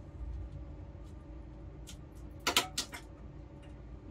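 A quick cluster of sharp plastic clicks and clatters about two and a half seconds in, from the plates of a manual capsule-filling machine being handled, over a steady low hum.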